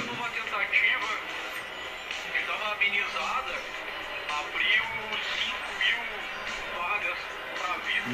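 A man's voice talking over background music, quieter than the room voices around it, in the manner of a video's soundtrack playing back.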